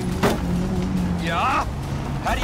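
A car running, mixed with soundtrack music. A sharp knock or crack comes just after the start, and a brief vocal exclamation past the middle.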